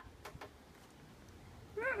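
Low background quiet, broken near the end by one short, high call that rises and falls in pitch, like a meow.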